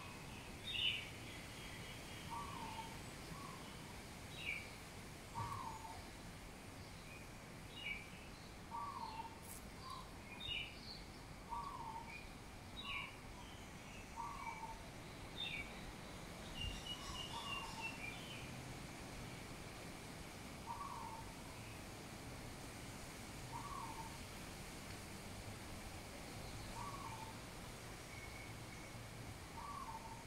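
Birds calling: one bird repeats a short, low two-note call about every three seconds, while others add scattered high chirps, mostly in the first half.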